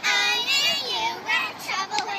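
Young girls singing in high voices, loud and in short, broken sung phrases.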